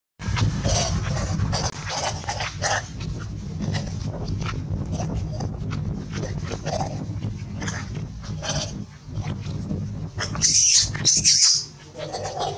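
Long-tailed macaques calling, with two loud, shrill calls close together about ten and a half seconds in, over a steady low rumble.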